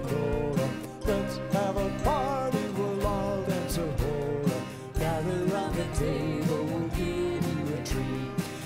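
Live folk-style song: a man singing over a strummed acoustic guitar in a steady rhythm, with a small band.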